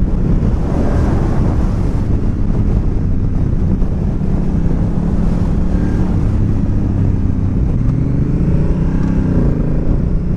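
Honda Africa Twin DCT's 998 cc parallel-twin engine running steadily under way. Its pitch rises near the end as the bike accelerates.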